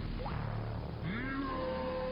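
A cartoon boy's voice: a brief rising squeak, then from about a second in a long, steady, high-pitched scream.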